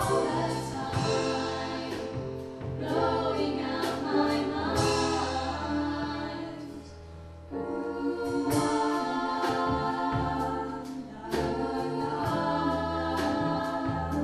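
School vocal ensemble singing in harmony: sustained chords over a low bass line, with a brief softer passage about seven seconds in before the voices swell again.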